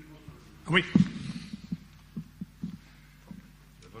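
A brief spoken 'oui', then about seven soft, dull knocks at irregular spacing over a steady low hum.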